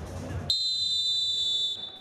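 Referee's whistle blown once in a single steady blast of just over a second, signalling the kickoff of a futsal match, starting about half a second in over low hall noise.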